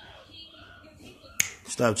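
A single sharp click about one and a half seconds in, then a person says "Stop".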